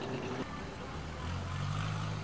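Boat engines running. A steady, higher engine hum cuts off about half a second in and gives way to a lower, deeper engine hum that grows louder after about a second.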